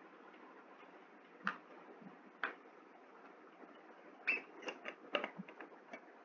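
Several sharp clicks and light taps over faint room hiss: two single clicks about a second apart, then a quick run of six or so clicks near the end.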